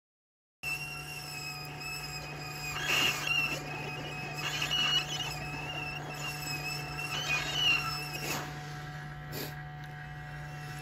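Hot air rework station blowing onto a laptop motherboard's BIOS chip to desolder it: a steady hum with a wavering whine above it, starting abruptly about half a second in.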